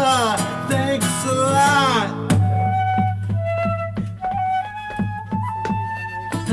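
A man sings long sliding notes over a strummed acoustic guitar; about two seconds in the voice stops and a flute takes over with a melody of held notes while the guitar keeps strumming a steady rhythm.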